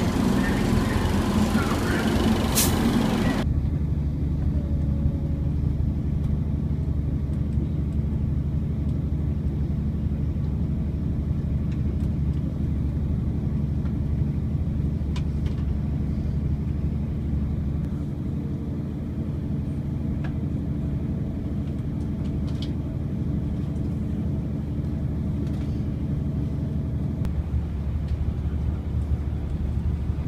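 TransPennine Express diesel train, loud from the platform beside it for the first few seconds. It then gives way suddenly to a steady low engine drone and rumble heard inside the carriage while the train runs along, with a few faint clicks.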